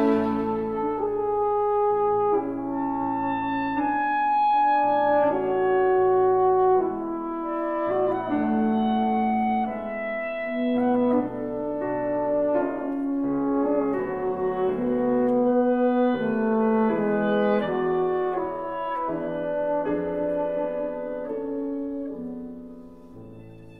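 Classical serenade music in a slow tempo: French horn and woodwinds playing long held notes that change every second or two.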